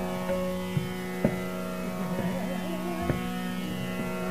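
Hindustani classical music in raga Bageshree: a steady tanpura drone, two tabla strokes and a soft wavering melodic line in the middle.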